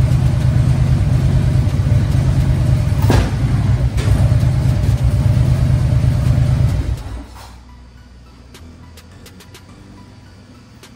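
Harley-Davidson Street Glide's V-twin engine idling with a loud, lumpy beat, warming up after a cold start, then cutting off suddenly about seven seconds in.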